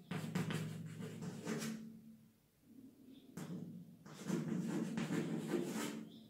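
Chalk writing on a chalkboard: uneven bursts of scratchy strokes with the board knocking under the chalk, and a short pause about two seconds in.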